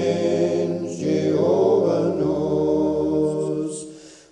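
Unaccompanied voices singing a hymn, holding the long notes of a verse's closing line, which fade away near the end.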